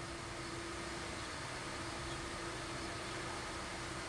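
Steady room noise in a large prayer hall: an even hiss with a faint steady hum underneath.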